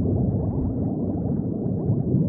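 Steady underwater bubbling: a dense stream of small bubbles gurgling, heard muffled as if under water, with many quick rising blips.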